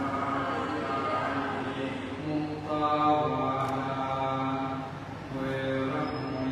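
Buddhist chanting: several voices chanting together on long, held notes in a slow, even recitation, with a short dip, like a breath pause, about five seconds in.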